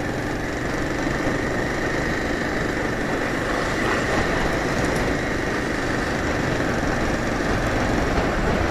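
Motorcycle engine running steadily while riding at moderate speed, mixed with steady wind rush on the on-board microphone.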